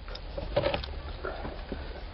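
Light clicks and scrapes of a flat pry tool working a small plastic trim piece loose from around an ignition lock cylinder on a steering column.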